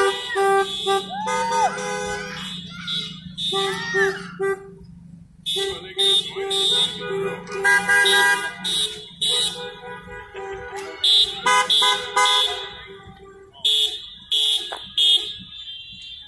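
Several car horns honking in overlapping short and longer blasts from a slow procession of passing cars.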